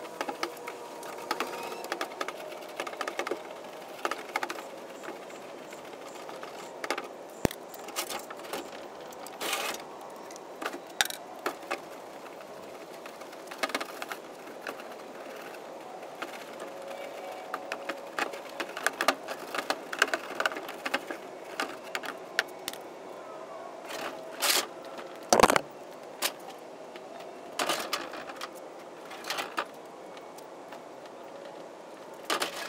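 A long-handled scrub brush scraping and knocking against the inside walls of a plastic IBC tote in irregular strokes, with sharper knocks scattered through and the loudest about 25 seconds in.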